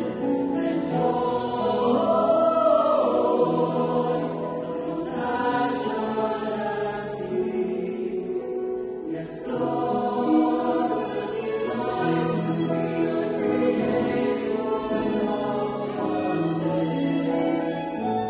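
A mixed college choir singing a hymn in parts, with several voices holding chords that change every second or two.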